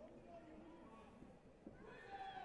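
Near silence: faint hall ambience with distant voices.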